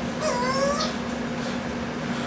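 A cat meowing once, a short wavering call of about half a second, over a steady low hum.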